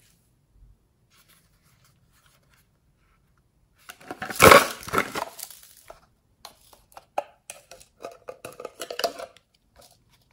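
Hands handling a small glass jar: a loud rustling clatter about four seconds in, then a string of light clicks and scrapes against the glass.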